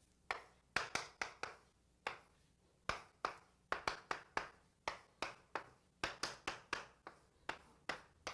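A writing implement tapping on a writing surface as an equation is written out: irregular sharp taps, a few per second.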